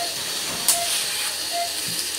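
A steady hiss with a patient monitor beeping about every 0.8 s, three beeps in all. About two-thirds of a second in there is one sharp click as wire cutters snip a steel transdental wire holding an arch bar.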